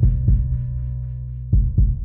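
Music soundtrack: a low sustained drone fading out, with two heartbeat-like pairs of deep thumps, one pair at the start and another about one and a half seconds in.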